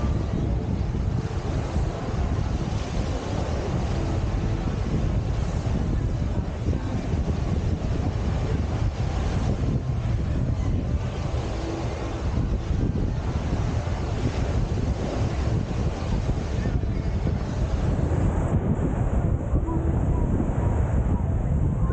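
Wind buffeting the microphone, a steady low rumble, over small waves breaking and washing up a sandy beach.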